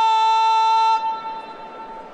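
A parade commander's long, drawn-out shouted word of command, one held note at a steady pitch. It stops about a second in, and a fainter ring of the same note lingers for about a second after.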